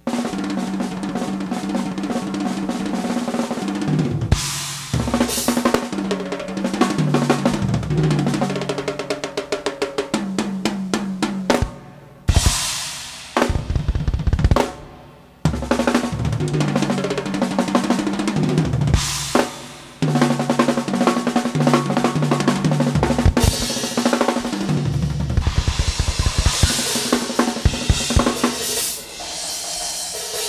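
Acoustic drum kit played in a steady groove of bass drum, snare and cymbals, broken by fast fills and rolls around the middle and heavier cymbal crashes toward the end. A low held note sits underneath and changes pitch every second or two.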